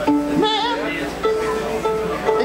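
Contra dance music starts up at the beginning with long held notes and plucked strings, while a voice talks over it.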